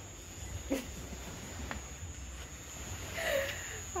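Low outdoor rumble with a thin steady high tone, broken by two brief vocal sounds: a short falling one under a second in and another shortly before the end.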